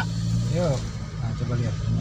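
Car engine and road noise droning steadily inside a moving car's cabin, with a voice calling out a few short sing-song syllables over it.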